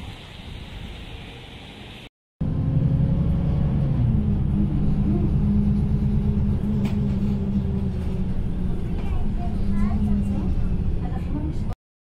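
Street noise at a bus station for about two seconds, then, after a brief cut, the steady low engine drone of a city bus heard from inside the cabin while it drives.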